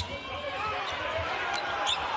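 Basketball being dribbled on a hardwood court, a few bounces heard over steady arena crowd noise.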